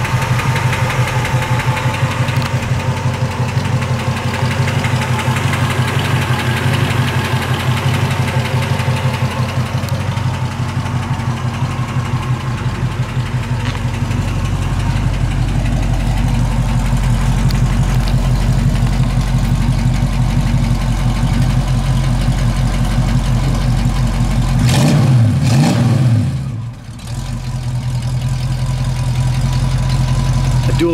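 A 1966 Ford Mustang's 289 V8 idling steadily through its dual exhaust. About 25 seconds in the note wavers briefly, then the level drops for a moment.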